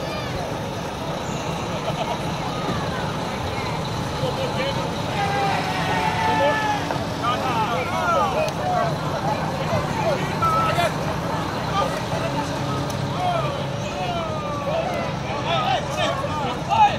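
A heavy truck's engine running steadily at low speed as it pulls a parade float, with people's voices calling out and chattering over it.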